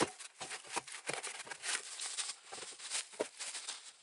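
Dry fallen leaves rustling and crackling in quick, irregular small clicks.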